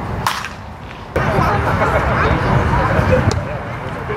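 A baseball bat cracks sharply against the ball once on a swing. It is followed by background voices chattering.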